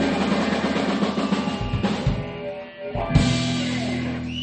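Live blues-rock band with electric guitar, bass and drum kit playing the close of a song: busy drumming, a brief drop, then one loud final hit about three seconds in with the chord held and ringing.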